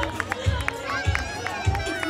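Music with a steady bass beat, just under two beats a second, under the chatter of a street crowd.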